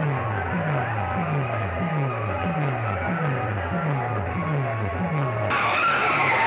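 Electronic dance music played through a large DJ rig of horn loudspeakers, built on a repeating falling bass sweep about twice a second. Just before the end the sound abruptly turns brighter.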